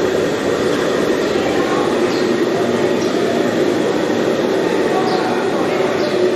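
A steady, loud rumbling roar that holds even throughout, with a few faint voices over it.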